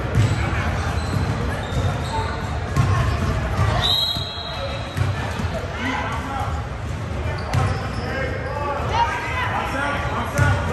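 A basketball bouncing on a hardwood gym floor in a large echoing gym, a series of irregular thumps with voices in the background. There is a brief high tone about four seconds in.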